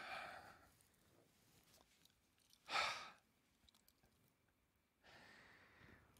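A man sighing, three breathy exhales with the loudest about three seconds in, in exasperation at Allen keys taped together.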